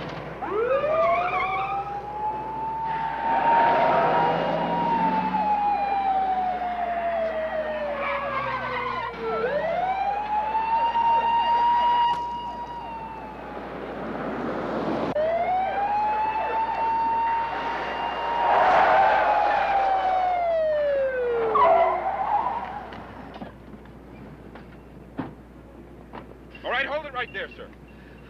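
Police car siren wailing in three long sweeps, each rising quickly, holding and then falling slowly, over rushes of car noise. It dies away a few seconds before the end.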